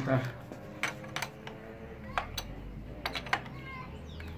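Wrench clinking against metal while the fork top cap of a Suzuki GSR 600 is tightened: about seven sharp, irregularly spaced metallic clicks.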